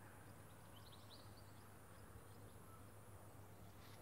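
Near silence over a low steady hum, with a few faint, high bird chirps in the first second and a half.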